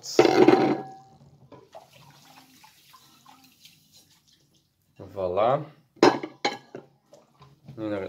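Dinner plates being washed by hand in a kitchen sink: a burst of water noise at the start, faint sloshing and dish sounds, then a couple of sharp clinks of plates about six seconds in.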